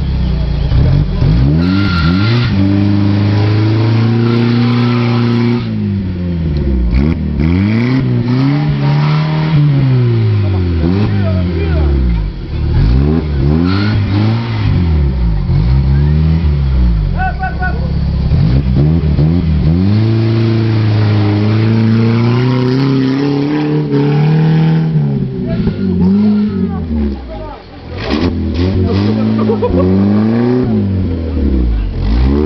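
Off-road Jeep's engine revved hard under load in deep mud, the revs rising and falling every second or two. The engine drops briefly near the end, then picks up again.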